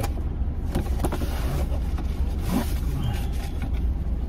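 Steady low rumble of a car's engine idling, heard from inside the cabin, with faint rustling of a cardboard box and plastic wrapping being handled.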